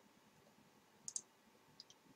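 Faint computer mouse clicks over near silence: a quick pair of clicks about a second in, and two fainter ticks near the end.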